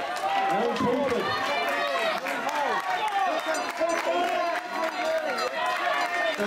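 Overlapping voices: several people talking at once, with crowd chatter.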